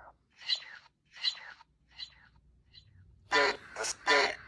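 Necrophonic spirit-box app playing from a phone: a string of short, whispery, speech-like fragments drawn from its sound bank, about half a second apart, then a louder, longer run of voice sounds near the end.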